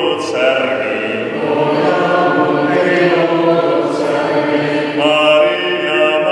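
A group of voices singing a slow hymn in long held notes, with a new phrase starting near the end.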